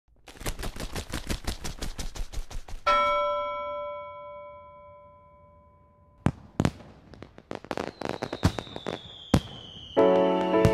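About three seconds of rapid crackling pops, then a single bell-like chime that rings out and fades over about three seconds. After that come scattered fireworks bangs and pops, with a slowly falling whistle near the end.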